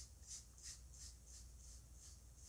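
Faint soft rubbing strokes of a paint-loaded foam sponge swept over an EVA foam petal, about three strokes a second.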